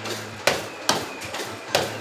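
Three sharp knocks, the first two close together and the third near the end, over a low steady hum.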